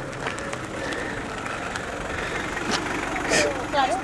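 A Mitsubishi four-by-four rolling slowly along a lane and pulling up, its engine running steadily at low revs. A voice starts near the end.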